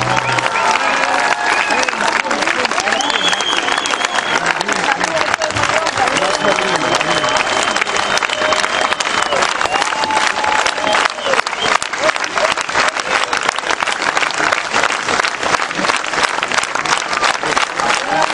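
Concert audience applauding steadily at the end of a song, with voices calling out and cheering over the clapping; the band's last chord breaks off right at the start.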